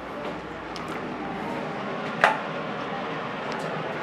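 Steady background hiss of a small indoor room, with one sharp click or knock a little past two seconds in.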